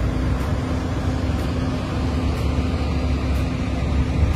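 Steady low drone with a constant hum from airport ground machinery running beside a parked airliner, such as a ground power unit or the aircraft's own auxiliary power.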